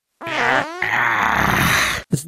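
Cartoon fart sound effect from a character on a toilet: a short pitched blurt, then a longer sputtering, hissing stretch.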